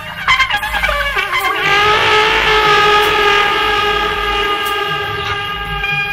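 Electric trumpet over a programmed electronic backing: a quick phrase of short, sliding notes, then one long held note from about a second and a half in, over a steady low beat.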